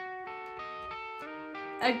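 Rock song's opening guitar riff: single picked notes, played quietly, changing pitch about every quarter second.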